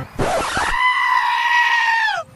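A short noisy burst, then one long, high-pitched scream held steady for about a second and a half before its pitch drops off near the end.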